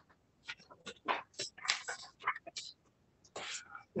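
Soft, scattered rustles and small handling noises of paper sheets, with a slightly longer rustle near the end.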